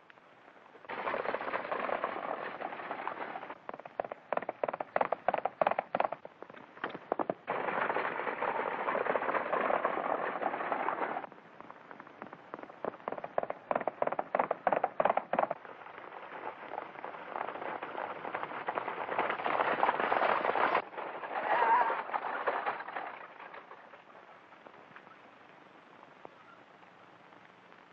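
Two rapid bursts of gunshots, a few seconds in and again about thirteen seconds in, with the noisy rush of galloping horses between them. The sound is thin and cut off at the top, as on an old film soundtrack.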